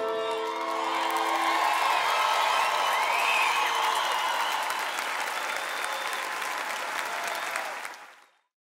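Audience applauding, with the band's last held chord ringing out and fading in the first two seconds. The applause slowly dies down and cuts off at the end.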